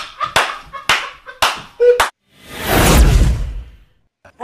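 About half a dozen sharp smacks in the first two seconds, then after a brief drop to silence a loud whoosh with a deep rumble that swells and fades: a video transition effect.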